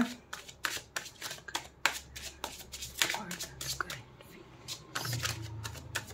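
A deck of tarot cards being shuffled by hand, packets of cards split and slapped back together in a rapid, uneven string of short clicks, several a second.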